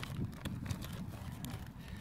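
Faint clicks of a Dymo embossing label maker's letter wheel being turned by hand from letter to letter, over a low rumble on the microphone.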